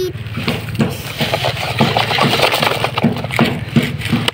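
Sand sliding and pouring out of a plastic toy dump truck's tipping bed, with irregular scrapes, clicks and rattles of hard plastic on sand.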